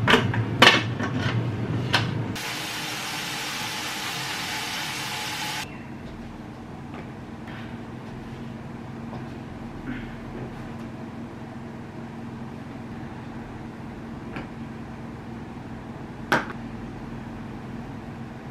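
An aluminium pressure-cooker pot handled on a gas hob: a few metal clanks and knocks. After about two seconds a steady rushing hiss starts, lasts about three seconds and stops suddenly. Then a quiet room with a low steady hum and a few soft clicks.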